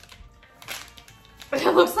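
A plastic snack wrapper rustling briefly as it is torn open, over faint background music; a woman's voice starts near the end.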